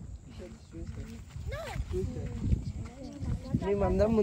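Dogs growling and whining, with people's voices in the background.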